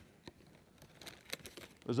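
A clear plastic bag crinkling and a cardboard product box being handled, with a few faint scattered clicks as items are lifted out.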